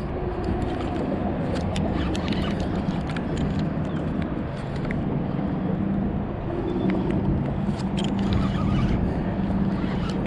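A boat's electric trolling motor running with a steady hum under a fish fight, with scattered short clicks and knocks.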